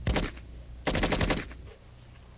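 Two short bursts of automatic fire from a Calico 9 mm submachine gun: a brief burst at the start, then a longer one of about half a second, beginning about a second in.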